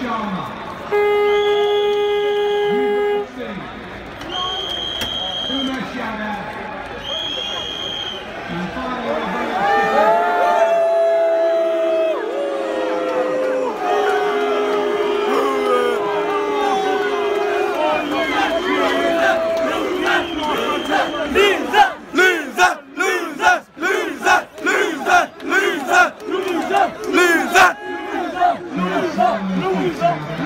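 A stadium crowd of cricket fans shouting and chanting, with a steady horn blast about a second in and several short, high whistle-like tones. In the last several seconds the chanting falls into a rhythm with sharp claps about twice a second.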